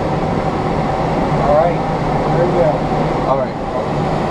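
Steady rush of airflow around a glider in flight, heard inside the cockpit, with faint indistinct voices under it.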